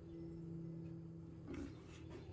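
Faint steady hum with a brief rub or rustle about one and a half seconds in as the small paint-poured garbage can is turned in the hands.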